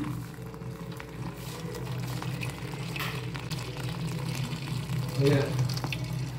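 Hot milk tea poured through a steel tea strainer into a pot, a steady bubbling, splashing liquid sound over a low steady hum.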